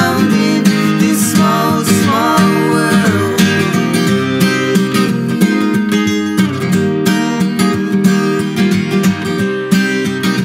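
Steel-string acoustic guitar strummed in a steady rhythm: an instrumental stretch of a live acoustic song.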